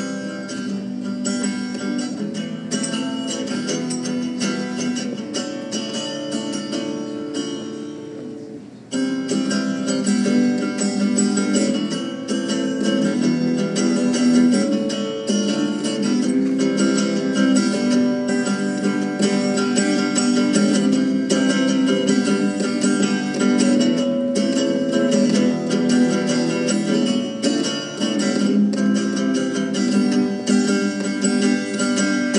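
Hollow-body electric guitar played solo, an instrumental intro with no singing. The playing breaks off briefly about eight seconds in, then comes back louder.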